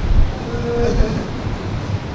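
A man weeping close to microphones between phrases of an emotional prayer, his breath making a heavy low rumble on the microphones, with a faint wavering cry about half a second to a second in.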